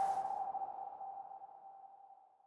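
The last note of a short TV ident jingle: one steady, clear tone left ringing after the tune ends, fading away over about two seconds.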